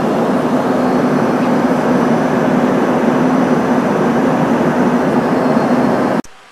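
Airliner cabin noise heard from a window seat over the wing: a loud, steady rush of engine and airflow with a low steady hum, cutting in and out abruptly.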